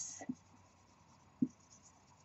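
Marker pen writing on a whiteboard: faint scratching strokes, with a single soft knock about one and a half seconds in.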